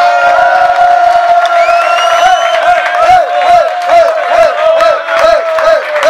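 A group of men chanting loudly in unison. A long held shout gives way, about halfway through, to a fast rhythmic chant of short calls, about three a second, with clapping in time.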